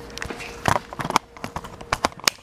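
Handling noise from the camera being picked up and carried: a string of irregular sharp clicks and knocks over a faint steady hum.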